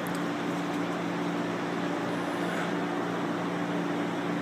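A steady mechanical hum with a low two-tone drone, like a fan or ventilation running, and no distinct events.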